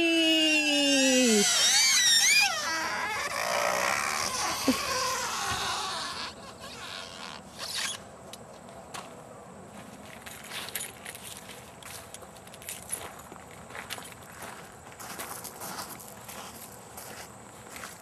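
A man's long "wee" call, falling in pitch, as he rides down a metal playground slide, with high wavering squeals over it for the first two seconds or so. From about six seconds in there is only a quiet outdoor background with scattered light clicks.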